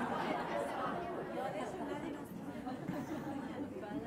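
Audience in a lecture hall chattering, many voices talking over one another in answer to a question, slowly dying down.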